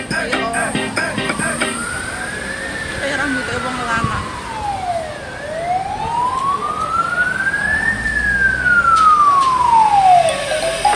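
Emergency vehicle siren wailing, its pitch sweeping slowly up and down twice, about five seconds to each rise and fall, growing louder toward the end.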